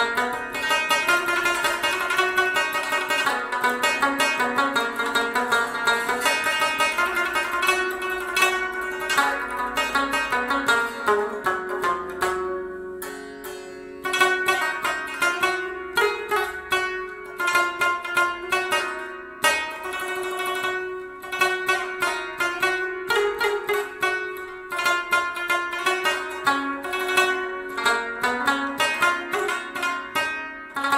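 Afghan rubab played solo: a fast plucked melody of sharply struck notes over a steady ringing drone. The playing thins out briefly about twelve seconds in, then the rapid picking resumes.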